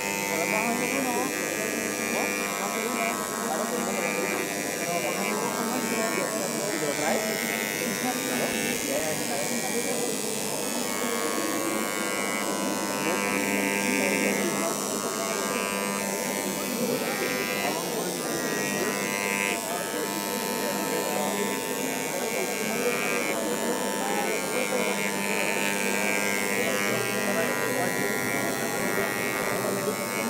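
Handheld electric engraving pen buzzing steadily as it cuts into acrylic, with its pitch holding level and a brighter edge that comes and goes as the tip works the plastic. Crowd chatter runs underneath.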